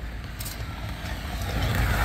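A road vehicle approaching, its noise swelling steadily louder through the second half.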